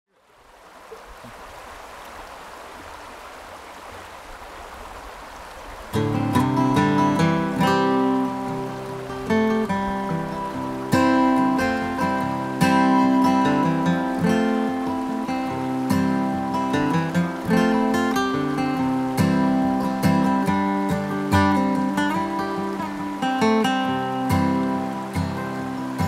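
Running river water fades in, then about six seconds in an acoustic guitar starts playing the instrumental intro of a folk song, with picked and strummed chords over the water.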